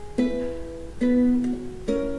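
Solo ukulele music: three plucked strokes about a second apart, each left to ring and fade.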